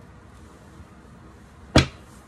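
Faint room tone, then a single sharp knock near the end.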